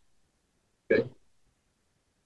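A man's voice saying a short 'okay' about a second in; otherwise near silence.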